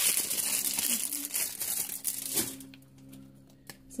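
Plastic wrapper crinkling as a Tsum Tsum squishy toy is unwrapped by hand. The crinkling is dense for about two and a half seconds, then dies down to a few faint clicks.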